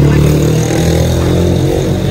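A small engine running steadily, its low hum fading near the end.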